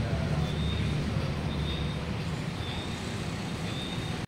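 Steady low rumbling noise, with a faint high tone coming back about once a second.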